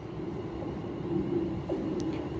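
Low rumble of a passenger train approaching the platform, slowly getting louder, with a faint steady hum. It is a stopping train coming in to halt, not one passing through at speed.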